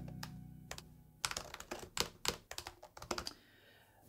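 Computer keyboard typing: a run of irregular key clicks, sparse at first and quickening past the first second, then stopping shortly before the end.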